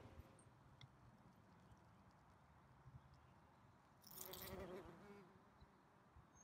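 Near silence: faint outdoor garden ambience, with a brief louder buzz about four seconds in as an insect flies close by.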